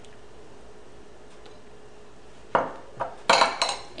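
A serving spoon and a glass pasta-sauce jar being handled and set down on a stone countertop: quiet for the first two and a half seconds, then one sharp knock followed near the end by a quick run of clinks with short ringing.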